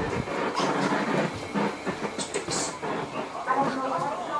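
Footsteps and knocks of someone walking with a handheld camera, with irregular clicks and handling noise.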